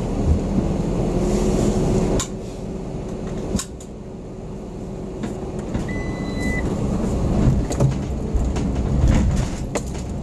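Car running, its low rumble heard from inside the vehicle, growing louder in the second half as it pulls away, with a few sharp knocks and a short high beep a little past halfway.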